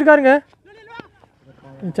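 A man's commentating voice trailing off in the first half-second, then fainter voices and a single faint click about a second in.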